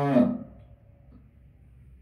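A man's chanted Quran recitation holding the last note of a phrase, which glides down and fades out within the first half-second, followed by a pause with only faint room noise.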